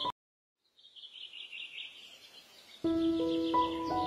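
Soft instrumental music stops abruptly, followed by a moment of silence. Then a songbird sings a quick, repeated chirping trill, faint at first. Slow, sustained instrumental music comes back in under the birdsong near the end.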